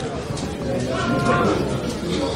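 Steady background noise at an outdoor football match, with a brief held tone about a second in.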